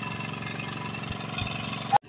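An engine running steadily at idle, a low even hum. A brief louder sound cuts in and stops at the very end.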